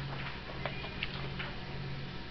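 Pages of a hymnal being turned and handled: a few short, light clicks and rustles of paper over a steady low hum in the room.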